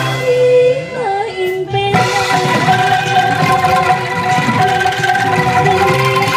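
A woman sings a Sundanese song into a microphone over an angklung ensemble with band accompaniment. For the first two seconds the accompaniment thins out while her voice bends between held notes, then the full ensemble comes back in.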